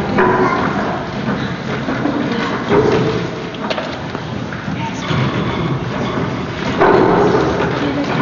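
Children's voices in short overlapping lines, with knocks and thuds of footsteps on the stage floor as several young actors walk on.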